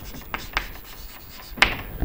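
Chalk writing on a chalkboard: a series of short strokes and taps as words are written, the sharpest about one and a half seconds in.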